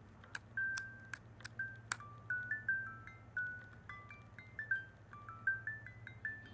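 Miniature music-box movement built into a vintage Aria musical lighter, playing a tune of short, single high notes about three a second. Sharp clicks from handling the lighter come through, the clearest about two seconds in.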